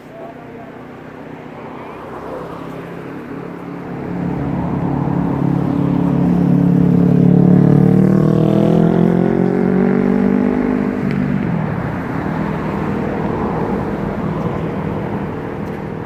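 A road vehicle's engine passing close by, building up to its loudest about halfway through, then rising in pitch as it accelerates away.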